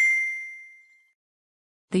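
A single bright bell-like ding, the notification chime of an animated subscribe-button graphic, ringing out and fading away over about a second.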